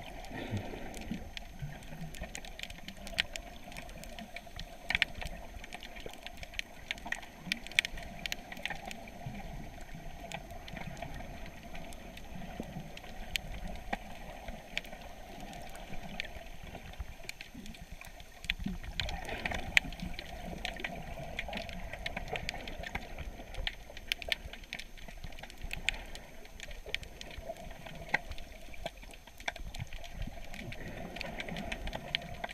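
Underwater sound picked up by a submerged camera: a dull, steady water wash scattered with frequent short clicks and crackles. The wash grows louder a little past halfway.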